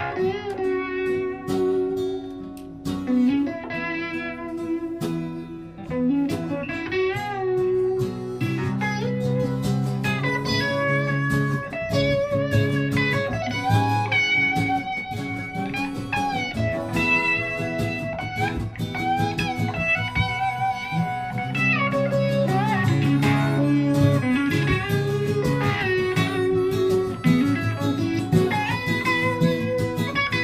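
Live band music in a bluesy style: several guitars played together, with a harmonica playing a lead line of wavering, bending notes over them.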